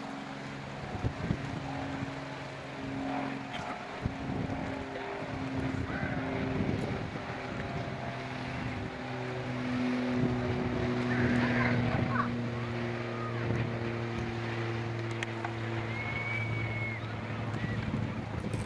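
A boat engine drones steadily, its pitch shifting slightly now and then, with wind on the microphone. A brief high tone sounds near the end.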